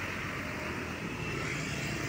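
Passing road traffic: a car and motor scooters going by close, a steady, even rush of engine and tyre noise.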